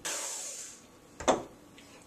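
Dry flour-and-cocoa mix poured from a bowl into a mixing bowl of batter: a brief soft hiss that fades out, then a single sharp knock about a second later.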